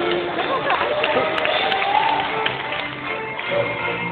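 Live orchestra of strings and acoustic guitars playing, with a person's voice gliding and wavering in pitch over the music in the first half. Two short sharp clicks about a second and a half in.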